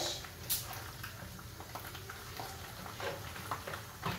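Diced raw chicken being pushed off a cutting board into a hot frying pan of onions with a wooden spoon, then stirred: soft scrapes and clicks, with a short hiss about half a second in.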